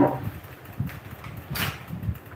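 Faint rustling and soft bumps of a person moving about and handling things, with a short rustle about one and a half seconds in.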